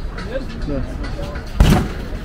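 A single hard punch landing on the bag of an arcade boxing machine: one heavy thump about one and a half seconds in.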